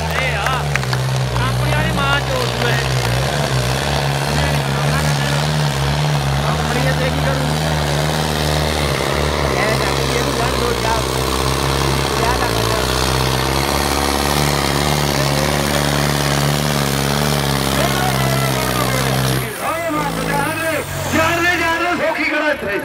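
Tractor diesel engine running steadily under heavy load while dragging a disc harrow through soil, stopping suddenly near the end. A man's voice is heard over it at the start and after it stops.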